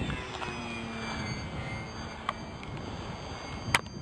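Radio-controlled P-47 Thunderbolt model's motor and propeller on a low fly-by, its pitch falling as it passes and then holding steady. A sharp click near the end.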